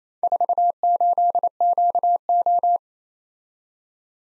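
Morse code practice tone sent at 28 words per minute: a single steady-pitched beep keyed in dots and dashes, spelling the four characters "4 8 Q O" (....- ---.. --.- ---). It stops near three seconds in.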